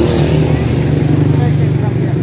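A steady low engine drone, loud and unbroken, with faint voices over it.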